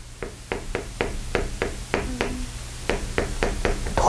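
Chalk striking a chalkboard as someone writes: a quick, irregular run of sharp taps, about five a second.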